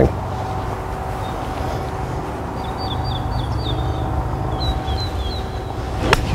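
Open-air background of a low, steady rumble with a faint steady hum, and a small bird giving two quick runs of short high chirps in the middle.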